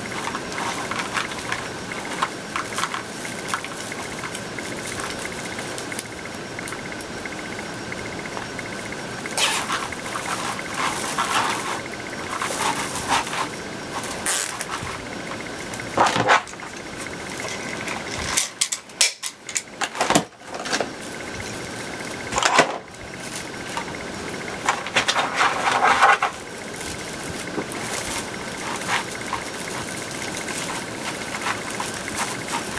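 Plastic deco mesh rustling and crinkling in irregular bursts as it is bunched and twisted by hand, over a steady faint hum.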